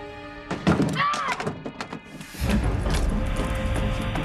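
A sudden thud and clatter of a fall, with a voice crying out briefly about a second in. Tense dramatic music then swells in, deep and steady, about halfway through.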